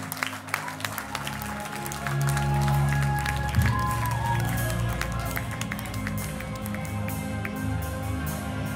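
Live melodic hardcore band opening a song with long, sustained guitar and bass notes, while the audience claps along.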